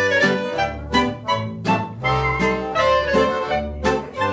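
A small folk ensemble playing a traditional Swiss folk tune. A nylon-string classical guitar is strummed in a steady rhythm, about three strokes a second, under a held melody line and low bass notes.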